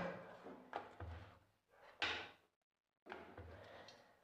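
A wooden rolling pin rolling out poori dough on a round metal board, faint, in a few short strokes.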